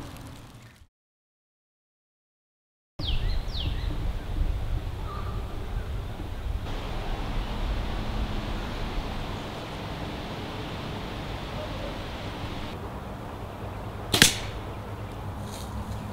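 A 60-lb compound bow shot at close range: a single sharp crack about fourteen seconds in, as the string is released and the arrow strikes the deer skull. It sits over a steady outdoor background, after a brief dead silence near the start.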